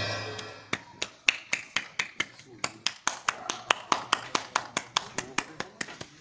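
A brass band's last note dies away at the start. Then comes a steady run of sharp taps, about four a second, with faint voices under them.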